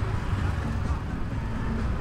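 Wind buffeting the microphone and the low rumble of riding a scooter through town traffic.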